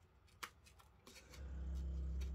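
Small scissors snipping through thin paper, a few faint sharp snips and clicks as the paper is turned. A low steady hum comes in about a second and a half in.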